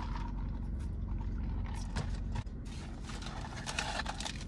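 Steady low hum of a car interior, with light crackling and a couple of clicks as a fast-food burger is taken out and unwrapped from its paper.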